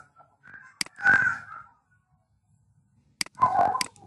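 A person's voice in two short stretches, with near silence between them, and a few sharp clicks: one about a second in and two near the end.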